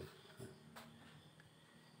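Near silence: room tone, with two faint clicks about half a second and just under a second in.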